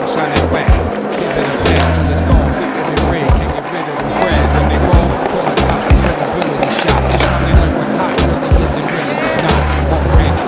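Hip hop backing track without rapping: a deep bass line in held notes under a steady drum beat.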